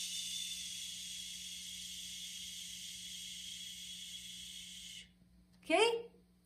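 A woman exhaling in one long, steady 'shh' hiss for about five seconds, fading slightly before it stops. It is a controlled release of breath in a singing breath-support exercise, letting the airflow out evenly.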